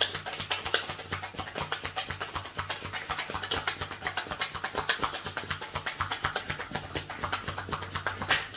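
A deck of tarot cards being shuffled by hand: a rapid, continuous run of small card clicks.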